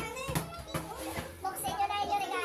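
Overlapping chatter of several people talking at once, children's voices among them, with a few short knocks.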